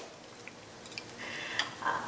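Quiet kitchen with a few faint light clicks of a plastic measuring spoon and a bottle being handled over a steel pot.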